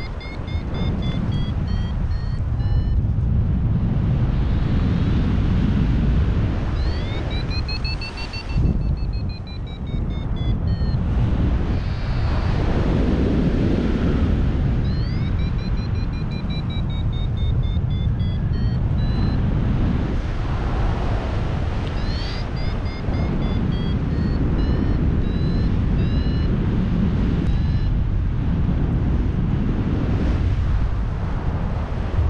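Wind rushing over the microphone in flight, with a paragliding variometer sounding its climb tone: runs of short high beeps, about three a second, their pitch sliding up and down as the lift changes while the glider circles in a thermal.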